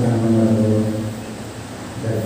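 A man's voice over a PA system, holding a long, steady low note that fades away over about a second and a half.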